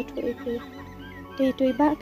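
Spoken dialogue over soft background music: two short bursts of a voice, one near the start and one in the second half, with steady musical tones underneath.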